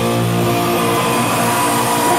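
Live punk rock band's electric guitars and bass holding a steady, ringing chord at loud volume.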